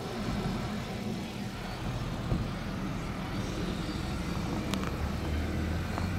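2014 Honda Accord idling: a steady low hum that grows a little stronger near the end as the front of the car comes close, with a couple of faint clicks.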